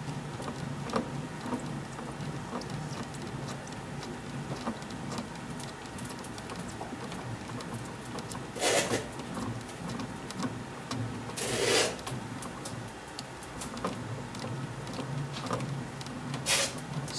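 A DeMarini CF composite bat turning under pressure between the rollers of a bat-rolling machine, being broken in. It gives a steady run of faint crackling ticks over a low hum, with two louder, half-second noises about nine and twelve seconds in.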